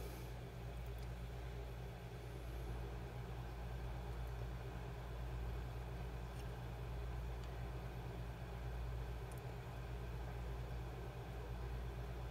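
Steady low hum, like a small fan or mains-powered bench equipment, with a few faint ticks from handling.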